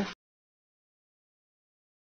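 The last of the spoken word "shaker" trailing off right at the start, then dead silence.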